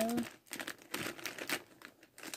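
Crinkling and rustling with irregular small clicks as a hand rummages among alcohol markers to pick one out.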